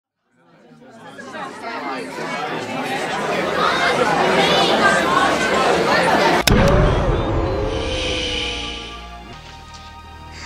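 Animated logo sting: a murmur of many voices chattering swells up from silence, then a single sharp click about six and a half seconds in cuts it off, leaving a low rumble and a few electronic tones that fade out.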